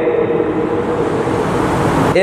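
A steady rushing noise that grows slightly and cuts off suddenly near the end.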